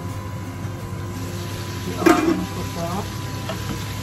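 Pork adobo with eggplant and green beans sizzling in a frying pan on a gas hob while a wooden spoon stirs it.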